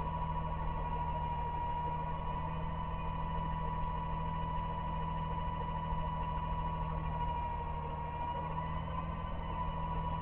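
Garbage truck engine idling steadily: a low, even hum with a thin high whine held over it.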